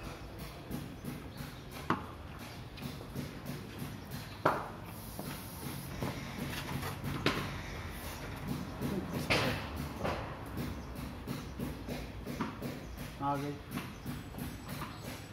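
Four sharp knocks a few seconds apart as a tennis ball is played around in a paved courtyard, with a low murmur under them.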